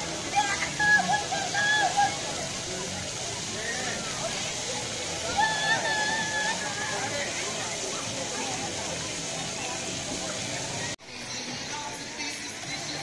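Splash-pad fountain jets spraying steadily, with children's high-pitched shouts about half a second in and again around five and a half seconds. The water sound cuts off abruptly about a second before the end.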